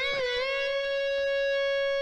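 Electric guitar ringing a single sustained note at the 13th fret of the B string, bent up a half step just after it sounds and held steady.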